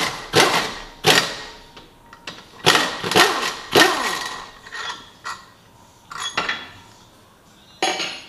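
Impact wrench driving the clutch puller bolt, in several short hammering bursts, the strongest in the first four seconds and weaker ones after. The puller is pressing the Can-Am Maverick X3's primary clutch off its shaft.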